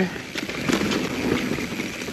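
Mountain bike rolling over a rough dirt trail and across the boards of a short wooden bridge: steady tyre and riding noise with rattles and a few sharp knocks from the bike.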